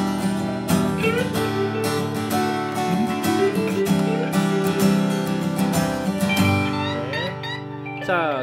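Steel-string acoustic guitar strummed with a Dava Delrin pick held far back from the tip so the pick flexes, giving a soft, flexible attack. Rhythmic chord strumming runs until the last second or two, when the chords ring out.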